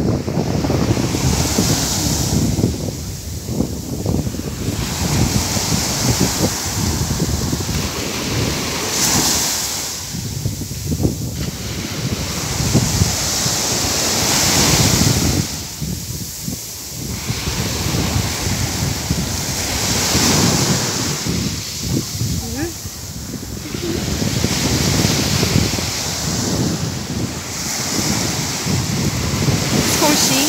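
Small sea waves breaking and washing up the sand at the shoreline, the rush swelling and falling back about every six seconds, with wind buffeting the phone's microphone.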